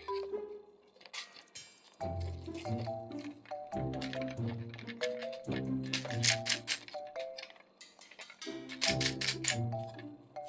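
Background music with a beat: a bouncy tune of short repeated pitched notes over a bass line. It thins out just after the start and comes back in full about two seconds in.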